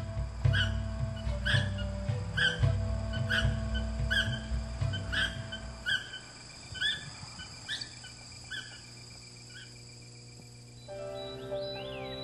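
Background music with held tones and a low pulse, over a bird's short rising chirps repeated about every half second. The chirps thin out and stop about ten seconds in, and a new music passage enters near the end.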